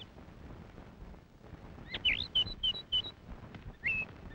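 Bird chirping, with a quick run of short high chirps about two seconds in and single chirps at the start and near the end.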